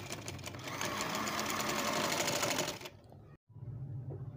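Sewing machine stitching at speed, a rapid, even run of needle strokes that stops about three-quarters of the way through, leaving only a low hum.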